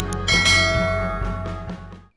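Subscribe-button sound effect: a click, then a bright bell chime that rings and fades away over about a second and a half, over background music.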